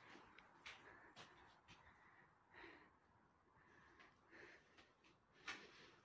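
Near silence, broken by a few faint clicks and soft breathy rustles, the sharpest click near the end.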